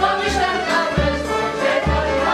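Live Polish folk dance music from a village band, led by violin, with a group of voices singing along over a steady bass-drum beat.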